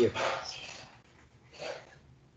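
A man's speech trailing off about a second in, then a single short, faint sound near the end.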